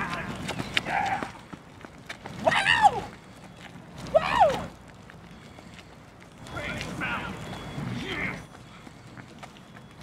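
A man's wordless whoops and yells, sweeping up and down in pitch, in imitation of a roller-coaster ride. There are two loud cries a couple of seconds apart, then a longer, weaker stretch of voice a few seconds later.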